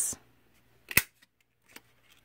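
A small handheld pineapple-shaped craft punch snaps through a strip of cardstock with one sharp click about a second in. A faint second click follows near the end.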